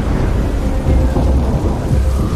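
Deep, continuous rumbling with a noisy rush over it, much like rolling thunder: an animation sound effect for the glowing spirit energy swirling around the meditating characters as they absorb soul bones.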